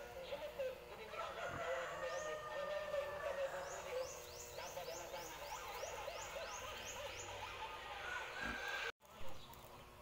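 Chickens clucking and calling, with a rooster crowing, and a small bird giving a run of quick, high rising chirps, about three a second, in the middle. The sound cuts out for a moment near the end.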